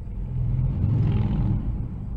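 Road traffic rumble heard from inside a moving car. It swells to a peak about a second in and then eases off.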